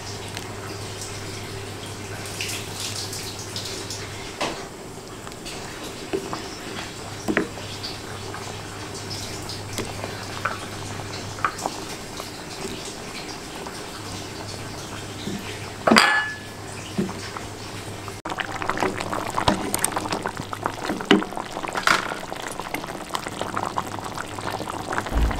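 Squid, tofu and potato gulai in coconut milk simmering in a wok, with small scattered bubbling pops over a steady low hum. One sharp knock about two-thirds of the way through, then the bubbling grows busier and denser toward the end as the curry comes to a full boil.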